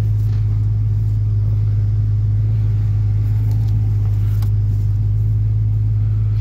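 2001 GMC Yukon's V8 idling steadily, heard from inside the cabin as a constant low hum.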